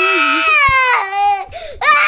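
A child crying loudly: one long, wavering wail of about a second and a half, then a fresh wail starting just before the end.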